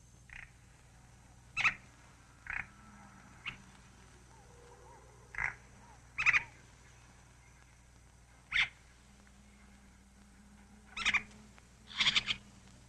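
Short, sharp animal calls, about eight of them at irregular intervals, over a faint steady hum.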